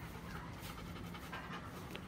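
Golden retriever panting steadily with its mouth open, a quick, even run of breaths about three a second.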